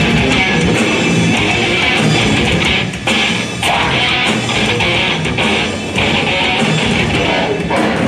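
Metal band playing live: electric guitar riffing over drums, loud and dense, with a few brief stops in the riff about three seconds in and again near six seconds.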